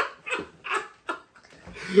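Two men laughing: a few short, breathy bursts of laughter that die away after about a second, then one starts to speak again near the end.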